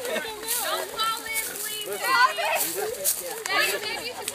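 Several young people's voices talking and calling out over one another, the words not clear.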